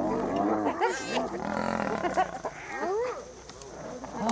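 Hyenas calling, many short overlapping calls that each rise and fall in pitch, over a lion's low growling; the calling thins out near the end.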